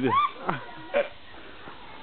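A person's short, high-pitched vocal cry that rises and falls, with two brief voice sounds after it, then a quieter stretch.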